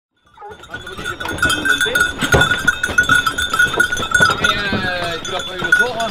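A pack of Grand Bleu de Gascogne hounds crowded behind a mesh gate, whining and yelping with short rising cries, among scattered knocks and scuffles. A steady high ringing tone runs underneath. The sound fades in after a brief silence at the start.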